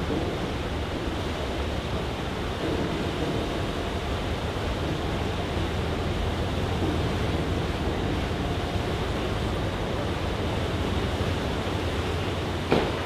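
Steady rush of propeller-churned water from a car ferry holding against its dock slip, over a constant low rumble from the ship.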